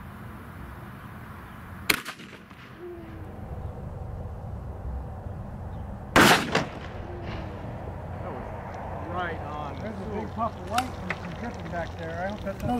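12-gauge shotgun fired: a short sharp crack about two seconds in and a louder, longer report with a ringing tail about six seconds in.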